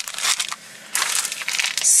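Plastic grocery packaging crinkling and rustling as it is handled: a short burst at the start, then a longer stretch of crackling from about a second in.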